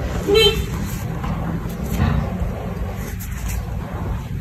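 Background road traffic with a steady low rumble, and one short vehicle horn toot about half a second in.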